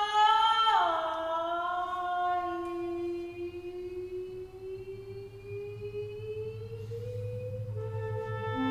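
Live chamber-ensemble music. After a bright note bends downward about a second in, one long held note slides slowly upward in pitch for several seconds, and a low hum joins it about halfway through.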